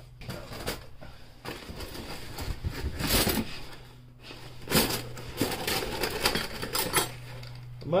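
Stainless steel spoons and forks clinking and rattling against each other as a handful is pulled out of a small cardboard box, among irregular knocks and the rustle of cardboard being handled.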